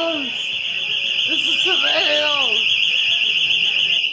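A loud, high, rapidly warbling electronic alarm tone, set off as a tornado warning comes in. A voice calls out over it about a second and a half in, and the tone cuts off suddenly at the end.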